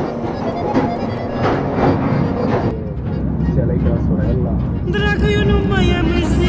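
Passenger train running along the rails, with regular wheel clacks over rail joints above a steady rumble. A little under halfway the clacks fade into a duller rumble, and near the end music with a wavering melody comes in over it.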